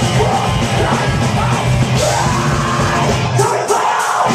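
A thrash metal band playing live: distorted guitars and drums under a shouted, screamed lead vocal. Near the end, the low end of the band cuts out for a moment while the vocal carries on.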